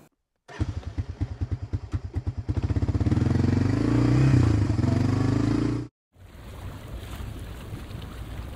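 Quad bike (ATV) engine: a low, stuttering putt that quickens into a steady run, its pitch rising and then easing, and it cuts off abruptly about six seconds in. After that comes a softer steady hiss of bubbling hot-tub water.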